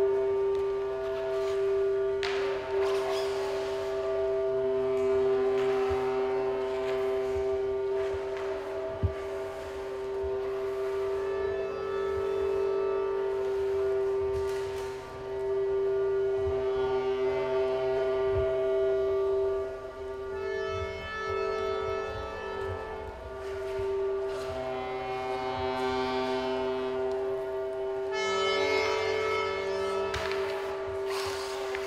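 Experimental drone music: one steady held tone throughout, with other sustained tones swelling in and fading over it. There is a single sharp click about nine seconds in, and a fuller, buzzier chord near the end.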